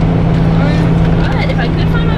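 Steady drone of a charter bus's engine and road noise, heard from inside the passenger cabin, with faint chatter from other passengers.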